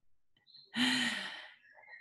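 A woman's single short, breathy sigh about a second in, with a faint hum of voice in it, fading away.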